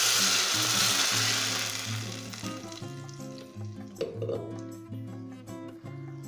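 Blended tomato salsa poured into hot oil in an enamel pot, sizzling loudly at first and dying down after about two to three seconds as the sauce settles in the pan. Background music plays underneath.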